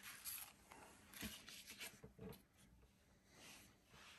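Faint rustling and scraping of a plastic screen-protector sleeve and cardboard packaging being handled, in a few short spells, with a couple of soft knocks.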